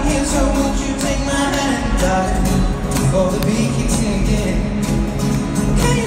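Live concert music over a stadium sound system, heard from high in the stands: a singer over a steady beat and accompaniment, playing without a break.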